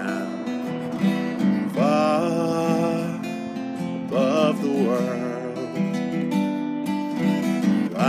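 Acoustic guitar strummed in a steady chord pattern, with a man singing long held notes over it.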